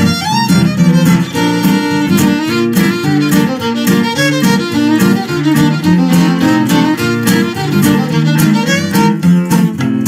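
Fiddle playing a fast run of melody notes, backed by strummed acoustic guitar rhythm.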